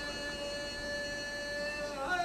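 Gathering chanting the salawat in unison, holding one long steady note.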